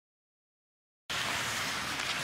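Dead silence for about the first second, then the ice hockey arena ambience of the broadcast cuts in suddenly as a steady, even hiss.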